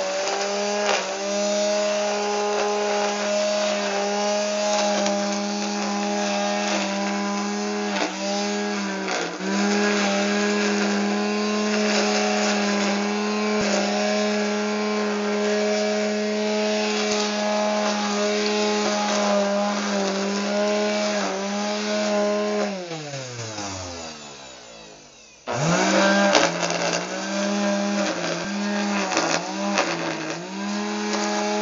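Corded electric string trimmer motor running with a steady whine, its pitch dipping briefly now and then as the line cuts into the grass. About 23 seconds in the motor winds down with a steadily falling pitch to silence, then starts again sharply a couple of seconds later.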